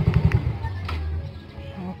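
Yamaha Mio i125's single-cylinder engine idling, then dying about half a second in as the wireless remote kill switch cuts the ignition. A faint low hum remains afterwards.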